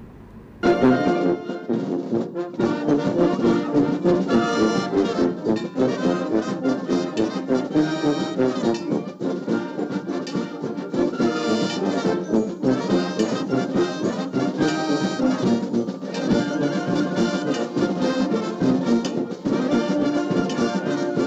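Brass band music with trumpets and trombones playing, starting about half a second in after a brief dip.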